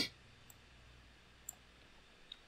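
Two faint computer mouse clicks about a second apart, the second louder, over quiet room tone.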